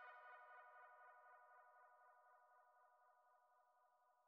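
Tail end of a reggae song: a final ringing note with an echo fades away, dying to silence about three and a half seconds in.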